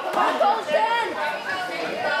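Chatter of several overlapping voices from spectators around a boxing ring, no words clear.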